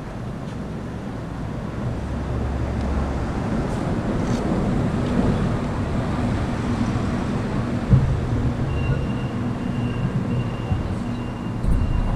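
A vehicle engine running steadily with a low hum, growing a little louder about two seconds in, with a single knock about eight seconds in.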